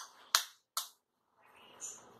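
A kitchen knife blade tapping an eggshell to crack it: three sharp taps within the first second, the second one the loudest, followed by softer scraping and crackling as the shell is worked open.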